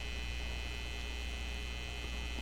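Steady electrical mains hum on the audio line, low and unchanging, with a faint high whine above it.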